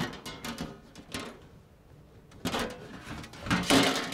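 Sheet-metal cover of a desktop computer tower being slid and pushed by hand along its chassis, giving a few separate clunks and scrapes, the loudest about three and a half seconds in.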